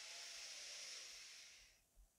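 A woman's faint, slow in-breath through the nose, about a second and a half long, fading out before the end.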